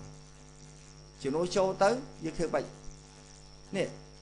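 A steady electrical hum, with a man speaking for a second or two in the middle and briefly near the end.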